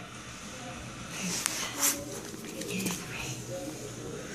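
Faint voices in the background, with a couple of light clicks and rustling from handling.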